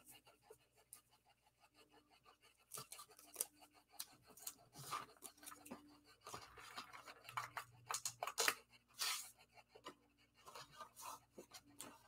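Faint handling of paper and card on a tabletop: scattered light rustles and clicks, starting a few seconds in.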